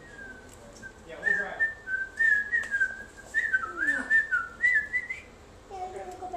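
Three- to four-week-old Old English Sheepdog puppies whining: a string of short, high, wavering squeaks that start and stop, with a few lower whimpers among them.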